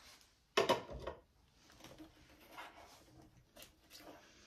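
Plastic cosmetic bottles and tubes handled on a cluttered counter: a sharp knock just over half a second in, then quieter clicks and rustles as a tube is picked up and its cap taken off.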